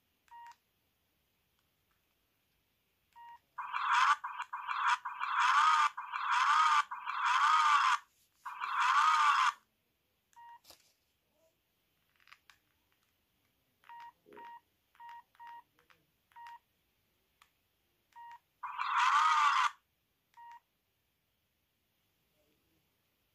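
Mini mobile phone's keypad beeps, about a dozen short single-pitch beeps as the menus are scrolled. Several much louder, buzzy tones with a wavering pitch come from the phone's small speaker, six in a row in the first half and one more near the end.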